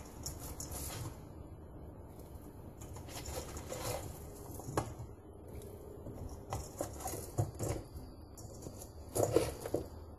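Broccoli florets being handled and dropped by the handful from a stainless steel colander into a pot of water: a quiet patter of rustles and small knocks, with a few louder knocks about five, seven and nine seconds in.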